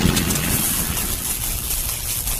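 Sound-effect rumble with a hiss on top, slowly fading: the tail of a boom from an animated end screen.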